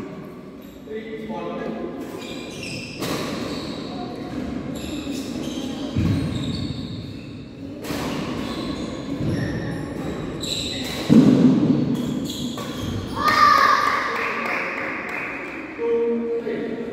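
Voices echoing in a large indoor badminton hall, with scattered knocks and thuds from players moving on the wooden court.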